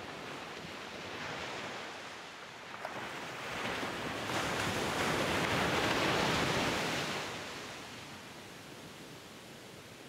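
A rushing noise like ocean surf, swelling to a peak about five to seven seconds in and then fading away.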